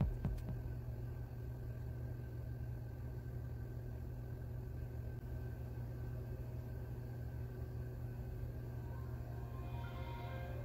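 Steady low hum, with faint pitched chime-like tones starting about a second before the end.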